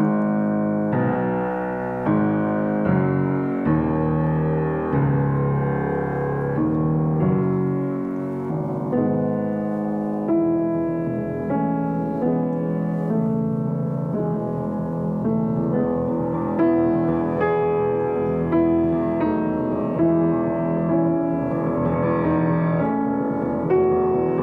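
Estonia grand piano played in slow, sustained chords, a new chord about every second, with a prominent darker bass.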